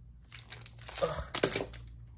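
Clear plastic wrapper of a frozen mango fruit bar crinkling in a run of quick rustles as the bar is handled, with a short groan of disgust in the middle.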